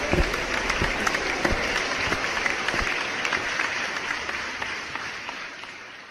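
Audience applauding, a dense patter of many hands, fading out over the last couple of seconds.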